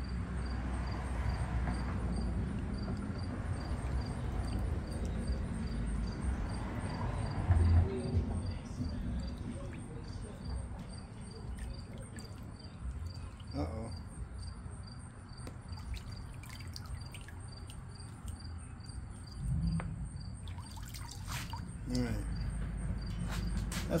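Water in a plastic tub sloshing as a paint-coated crate is worked under the surface and then lifted out, with water pouring and dripping off it back into the tub. There is a single thump about eight seconds in.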